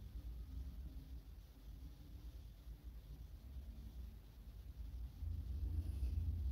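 Quiet room tone: a faint low rumble with no distinct event, growing a little louder near the end.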